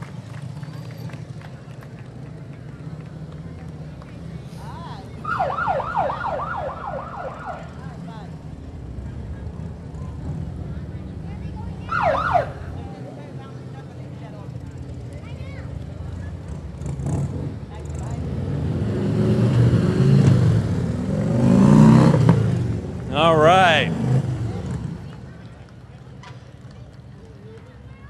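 Police motorcycles riding past with their sirens: a quick string of short yelps, a single falling whoop, and later a rapid warble. Between these, the motorcycle engines rumble, swelling to their loudest as the bikes pass close near the end.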